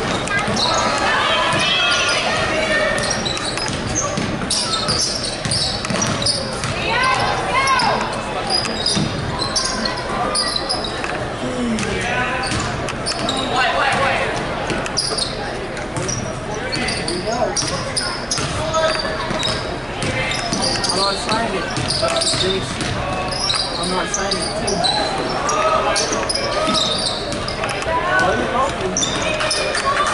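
Basketball bouncing on a hardwood gym floor as it is dribbled, with voices from the crowd and players going on throughout in the echoing gymnasium.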